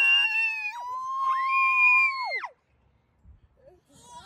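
High-pitched screams of delight from riders on a spinning playground merry-go-round: one long held scream runs into a second, with a higher voice joining in. All break off with a falling drop about two and a half seconds in.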